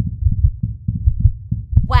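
Heartbeat sound effect heard through a stethoscope: several heartbeats overlapping in a fast, uneven low beating. There are four heartbeats at once, the sign of a pregnant cat carrying kittens.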